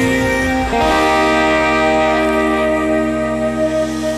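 Gretsch electric guitar playing ringing, sustained chords through delay and reverb, moving to a new chord just under a second in.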